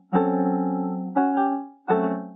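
Piano playing slow, sustained chords: one struck just after the start, a second about a second in, and a third near the end, each fading away after it is struck.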